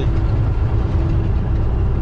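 Steady low drone of a semi-truck's engine and tyres heard inside the cab while cruising at highway speed, about 60 mph.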